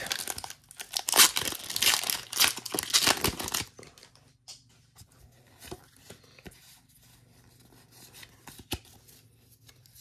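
The foil wrapper of a Pokémon trading-card booster pack being torn open and crinkled, in rustling bursts for about the first three and a half seconds. After that there are only faint clicks and rustles as the cards are handled.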